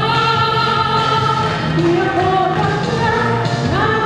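A woman singing into a microphone over backing music. She holds one long note over about the first second and a half, and her voice slides up in pitch near the end.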